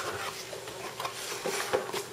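Hands handling a cardboard box and its paper contents: soft rustling with a few small scrapes and taps as items are taken out.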